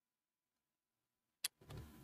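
Near silence, then a single sharp click about one and a half seconds in, followed by low rustling handling noise.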